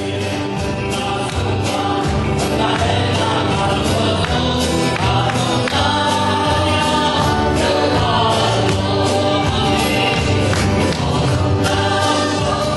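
A man singing a gospel worship song into a microphone while strumming an acoustic guitar, with an even strumming rhythm under the vocal line. The sound rises in the first second or so, as if faded in, then holds steady.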